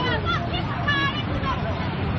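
A river in flood rushing steadily, its muddy torrent making a dense, even noise, with people's voices talking over it during the first second and a half.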